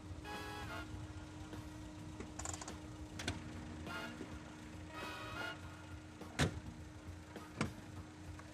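A car's engine comes to a stop with music playing over it, then two sharp clacks of a car door about a second apart near the end, the first the louder.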